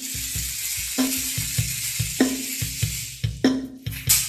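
Berimbau music: the berimbau's steel string struck three times, about once every 1.2 seconds, each stroke ringing at a low steady pitch, over a regular low pulsing beat and a continuous high hissing rustle.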